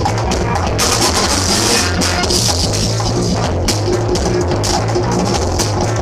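Loud breakbeat music with a drum-kit beat over a steady bass line, played for breakdancing.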